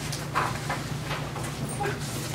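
Paper rustling as sheets are handled and turned on a table, a handful of short rustles through the two seconds, over a steady low room hum.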